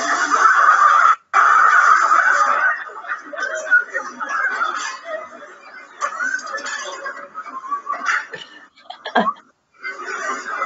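Soundtrack of a short comedy video set in a kitchen, played over a web-conference screen share: voices and background sound from the clip, cutting out briefly twice, about a second in and again near the end.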